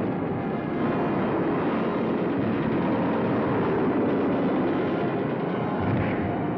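Steady, dense roar of a war film's battle sound effects, running on without breaks and without distinct separate blasts.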